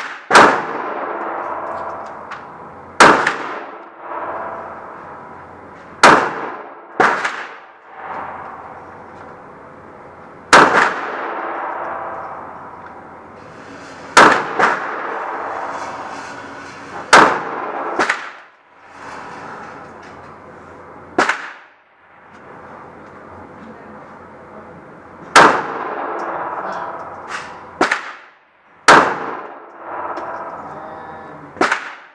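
Smith & Wesson M&P 9 pistol fired one shot at a time, about a dozen single shots at uneven gaps of one to several seconds. Each crack rings on in a long echo off the walls of an indoor range.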